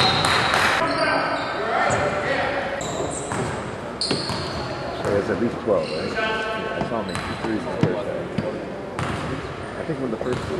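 Indoor basketball game sounds in a reverberant gym: indistinct voices of players and spectators echoing in the hall, with a basketball bouncing on the hardwood floor.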